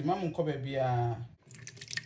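A voice for about the first second, then soaked oats and their water being poured and splashing into a plastic blender jar.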